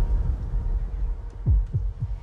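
Low bass pulses from a film trailer's sound design, with a deep hit falling in pitch about a second and a half in.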